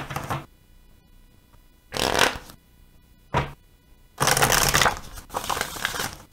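An oracle card deck being shuffled by hand in separate bursts of rustling and riffling: a short run at the start, another about two seconds in, a brief one just past three seconds, and a longer stretch from about four seconds on.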